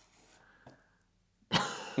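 Quiet room tone with a faint click, then a sudden breathy burst near the end as a person bursts out laughing.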